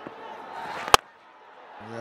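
A cricket bat striking the ball once, a sharp crack about a second in. Stadium crowd noise sits behind it and drops away after the hit.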